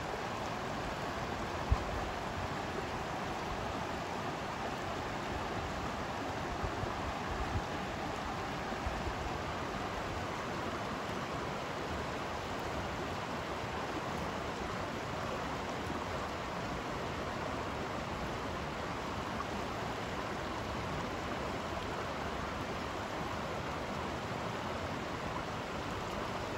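Steady rush of water running over the rocks and riffles of a small mountain stream, with a brief low bump about two seconds in.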